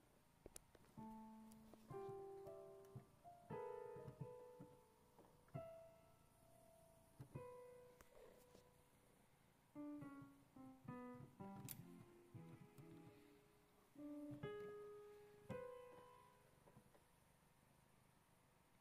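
Digital keyboard with a piano voice, played quietly: separate single notes and short halting runs, irregular in timing, each ringing and fading. There is a short pause about halfway through.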